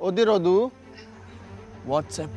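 A person's voice sounding a short warbling note, its pitch wavering quickly up and down, that stops under a second in.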